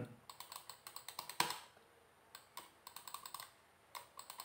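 Faint typing on a computer keyboard: irregular key clicks with one louder keystroke, a short pause about halfway, then a quicker run of keystrokes.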